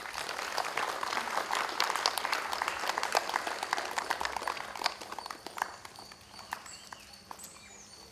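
Crowd applauding, many hands clapping, thinning out and dying away about five or six seconds in.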